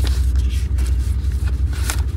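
A 1991 Cadillac Brougham's V8 idling with a steady low exhaust rumble, which the owner puts down to the muffler probably coming apart. Papers rustle and shuffle over it as service slips are handled.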